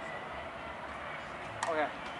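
Steady outdoor background hiss with no distinct events, then a short spoken remark near the end.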